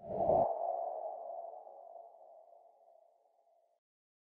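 A logo sound effect for an end card: a short low thump at the start with a hollow, whooshing tone that fades out over about three and a half seconds.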